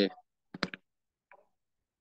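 Two quick computer mouse clicks about half a second in, then a fainter click a moment later.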